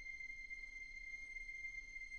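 A faint, steady high-pitched tone with fainter overtones above it, held without change: a sustained electronic tone in the intro soundtrack.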